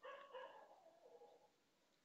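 A faint pitched whine that fades out after about a second and a half.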